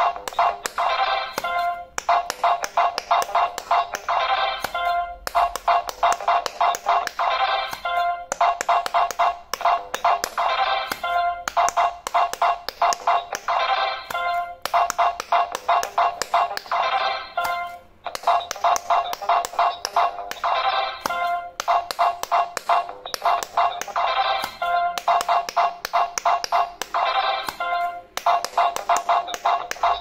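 Electronic quick-push pop-it game playing rapid synthesized beeps and a chiptune-like tune as its lit silicone buttons are pressed quickly, with taps of the buttons. The beeping comes in phrases of about three seconds with short breaks between.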